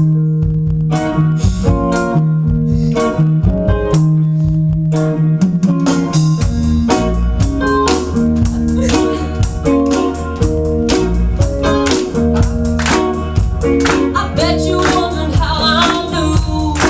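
Live rock band playing with electric guitar, bass and drums, the guitar holding stop-start chords over the drum beat. About six seconds in the bass and full band come in, filling out the low end.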